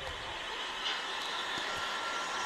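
A greyhound track's mechanical lure running along its rail toward the starting boxes, a steady running noise that builds over the first second, with a faint high whine coming in over the second half.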